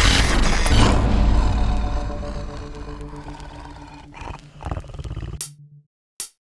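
Horror-style intro soundtrack: a loud, noisy impact that dies away slowly over about four seconds, leaving a few low held tones, then cuts off suddenly about five and a half seconds in.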